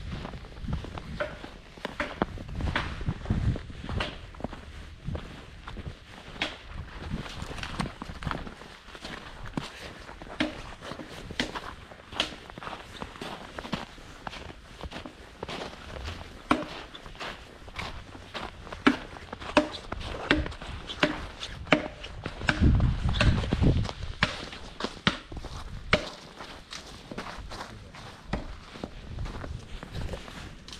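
Footsteps crunching through snow at a steady walking pace, about two steps a second. Twice there is a spell of low rumble on the microphone, the louder one late in the stretch.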